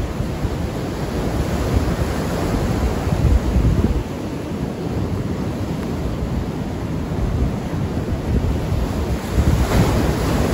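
Ocean waves breaking and washing on the shore, with wind buffeting the phone's microphone as a low rumble. The wash swells louder about three seconds in and again near the end.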